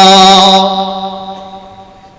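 A man's voice holding one long, steady chanted note at the end of a Quran verse recited in melodic style, fading away over the last second or so.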